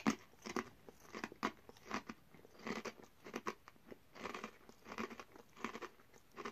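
A person biting into and chewing a thick crinkle-cut potato crisp: a run of irregular crunches, about three a second.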